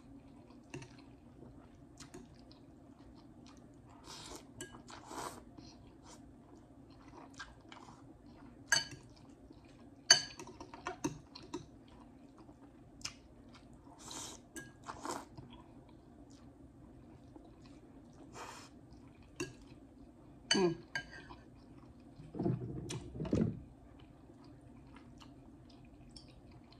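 A metal fork clinking against a glass bowl while someone eats ramen noodles, with quiet chewing between the sharp, scattered clinks.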